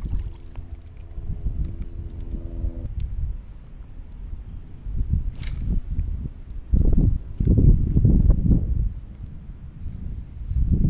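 Wind buffeting an action camera's microphone out on open water: a low rumble that swells in gusts about halfway through and again a little later. A faint steady hum of several tones sounds under it for the first three seconds.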